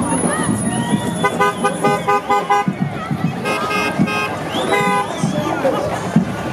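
A vehicle horn honking: a quick run of short beeps, then a few longer blasts, over crowd chatter.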